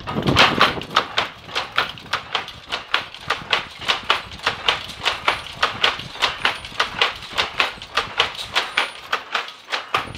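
A shuttle power loom with a dobby running at full speed, its sley beating up and shuttle picking in a fast, even clacking of about three strokes a second.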